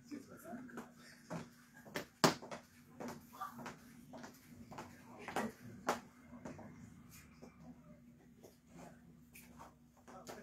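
High-heeled shoes clicking on a hard wood-look floor as a woman walks, roughly two steps a second, the sharpest click about two seconds in.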